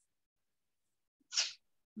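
Near silence on the call line, broken about a second and a half in by one short, sharp breath noise from a person.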